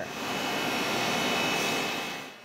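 A steady rushing noise that swells over the first second and a half and fades away near the end.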